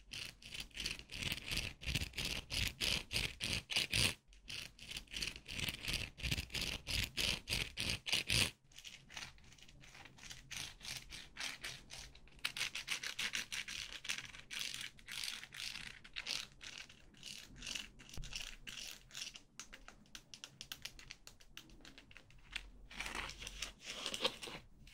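White plastic toothed hair clip rubbed and scraped close to the microphone in a fast run of scratchy strokes, several a second. The strokes are louder for the first eight seconds or so, then softer and sparser.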